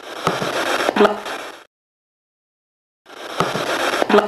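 A short stretch of recorder hiss is played twice with dead silence between. It has a sharp click about a quarter second in and a knock near one second, followed by a brief faint murmur. This is the unintelligible supposed EVP reply to 'You want to play for the bottle?'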